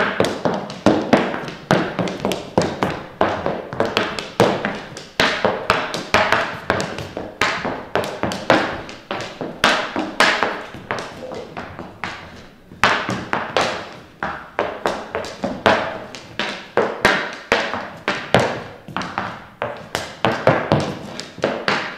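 Hockey stick blade tapping a small ball back and forth on a wooden floor while stickhandling: quick, uneven taps and thuds, several a second.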